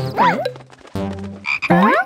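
Cartoon sound effects over light background music: a warbling, wobbling pitched call near the start and a rising, swooping one near the end, croak-like in character.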